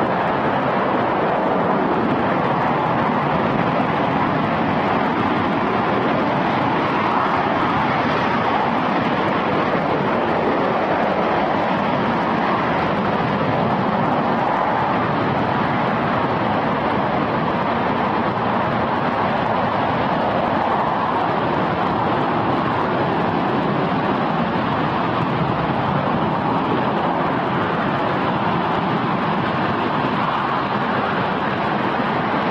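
RS-25 liquid-hydrogen/liquid-oxygen rocket engine firing steadily during a static hot-fire test: a continuous, unbroken rushing noise of exhaust that holds one level throughout.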